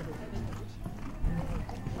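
Horse's hoofbeats at the canter on a sand show-jumping arena, with a louder thud a little over a second in.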